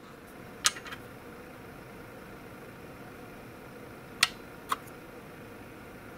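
Steady whir of the cooling fan in a home-built e-bike battery discharge station made from a computer power-supply case. A few light clicks come through it, two close together near the start and two more around four seconds in, as the 3D-printed plastic plug parts are handled.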